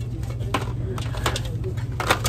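Cardboard toothpaste boxes being handled and pulled from a store shelf, a few light clicks and knocks over a steady low hum.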